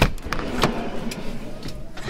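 Fiat Ducato van's sliding side door being unlatched and opened: a sharp clack of the latch at the start, then a few smaller clicks and the rattle of the door moving back.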